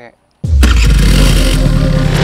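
After a brief gap, a loud intro starts about half a second in: a motor-vehicle engine starting and revving, mixed with heavy-bass electronic music.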